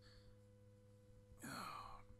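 A faint steady hum, then about one and a half seconds in a man lets out a short, breathy, falling sigh that is voiced as an "uh".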